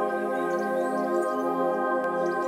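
Intro of a progressive psytrance track: a steady held synthesizer chord with no beat and no bass.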